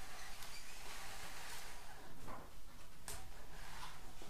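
Faint handling noise with a few light clicks from a small wooden toy sweeper being moved over a tabletop.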